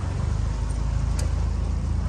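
Small aluminium boat's motor running steadily under way: a continuous low engine rumble with rushing wind and water noise.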